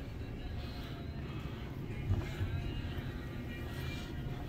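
Indoor store background: a steady low hum with faint distant voices, and a couple of soft knocks about two seconds in.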